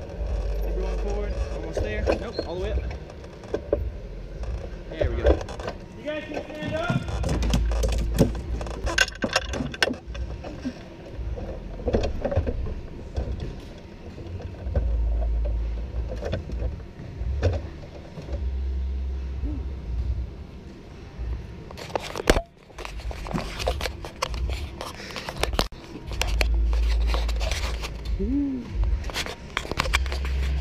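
Indistinct voices with scattered clicks and scrapes, and bouts of low rumble.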